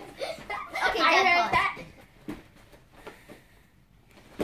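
Children's voices, with a loud, high-pitched call just after a second in; quieter after that.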